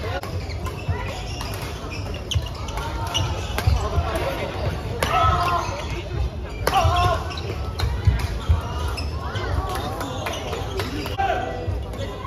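Badminton rackets striking the shuttlecock during doubles rallies, sharp cracks every second or two, with players' voices and calls ringing out in a large sports hall.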